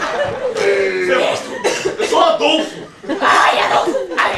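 Wordless vocal sounds from a woman performer, with cough-like outbursts and no clear words.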